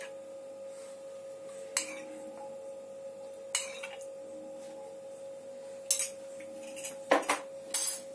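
Metal spoon clinking against a ceramic mug while oil is spooned out of it: a few sharp clinks a couple of seconds apart, coming closer together near the end, over a faint steady hum.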